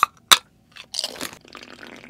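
Aluminium drink can opened by its pull tab: a click, then a sharp loud crack about a third of a second in, a short hiss about a second in, then quieter sounds of drinking from the can.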